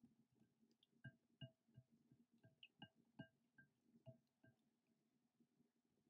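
Faint clinks of a silicone whisk against a glass bowl while mixing slime, each strike ringing briefly at the same few pitches. About a dozen strikes, roughly three a second, start about a second in and stop halfway through.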